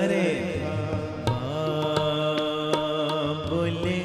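Sikh shabad kirtan: harmoniums sounding held notes under a voice sustaining long sung notes, with tabla strokes.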